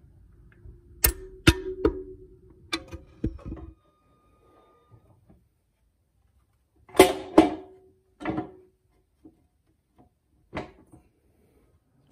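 Cast-aluminium case halves of a Mitsubishi DCT470 dual-clutch transmission knocking together as the upper case is lowered and worked down over the gear shafts and shift forks. A few sharp metal knocks with a short ringing tone in the first few seconds, more clunks about seven to eight seconds in, and one more near the end.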